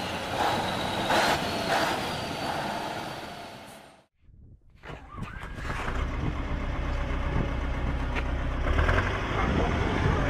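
Heavy diesel truck engines running with a thin steady high whine over them, fading out about four seconds in. After a short gap, a tracked excavator's diesel engine runs with a deep, steady rumble.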